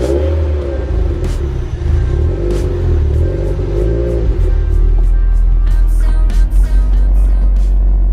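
Toyota MR2 (SW20) inline-four engine idling steadily through its aftermarket single-tip exhaust just after a cold start, a deep steady exhaust note. Music plays over it.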